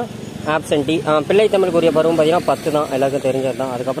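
Speech only: one voice talking steadily in Tamil.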